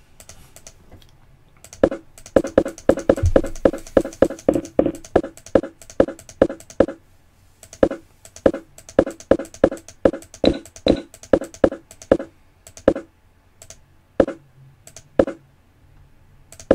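Rapid clicking at a computer, each click stepping a replayed chess game forward one move. A quick run of clicks starts about two seconds in, then a slower, steadier run follows that thins out near the end.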